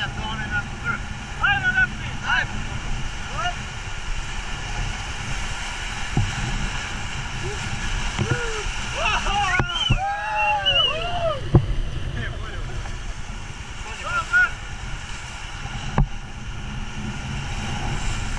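Whitewater rapids rushing and splashing against an inflatable raft, with wind buffeting the microphone. People shout and whoop several times over the noise, most of all around halfway through as a wave breaks into the boat.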